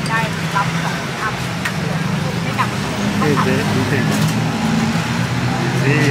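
Busy night street-food ambience: a steady low hum like an idling engine under the scattered chatter of diners and passers-by, with a few sharp clinks.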